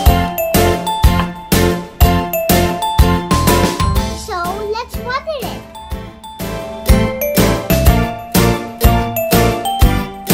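Upbeat children's background music with a tinkling, bell-like melody over a steady beat. A brief child's voice sound, gliding up and down, comes in about halfway through.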